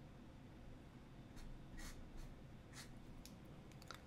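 Faint scratching of a fountain pen nib on paper: a handful of short, quick pen strokes as the number is finished and a box is drawn around it.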